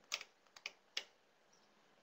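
A few faint, sharp computer keyboard key clicks: two close together, then two more about half a second apart, as the page is launched to run.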